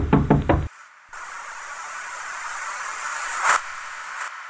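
Knocking on a wooden door: a quick run of four or five knocks right at the start.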